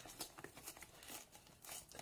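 Faint crinkling and rustling of a small toy box's packaging being opened by hand, with a few light ticks.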